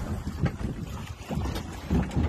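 Wind buffeting the microphone over water splashing and sloshing at a small boat's stern, where a great white shark is churning the surface beside the outboard motor.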